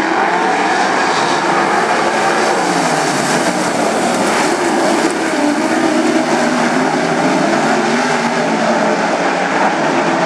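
A pack of wingless sprint cars racing at full throttle, several engines running together in one loud, steady blare whose pitches rise and fall as the cars go through the turns.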